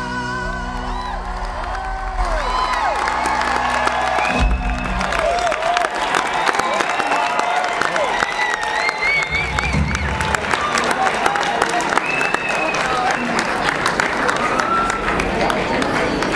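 A live band's closing chord ringing out and stopping about four and a half seconds in, while a concert audience claps and cheers, with whistles rising and falling through it.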